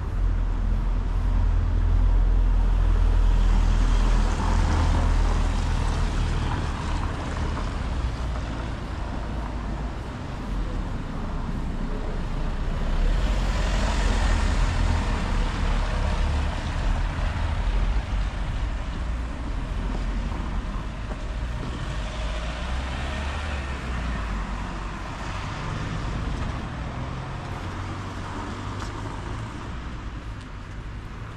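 Town street ambience on wet paving: a low steady rumble, with the hiss of vehicles passing on the wet road swelling and fading about three times.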